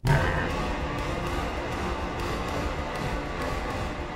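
Dark, dense film-score music from the horror film: it starts abruptly at full level with a deep low end and holds steady as an unbroken wall of sound.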